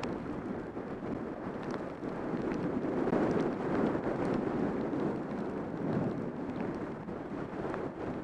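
Wind buffeting the microphone of a camera on a fast downhill ski run, with the hiss of skis sliding over packed snow; it swells in the middle.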